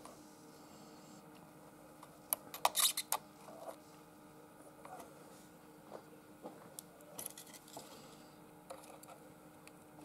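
Faint small metallic clicks and taps of tools and component leads on a valve amplifier's steel chassis as a replacement capacitor is fitted and soldered, a cluster about two to three seconds in and more scattered later, over a faint steady hum.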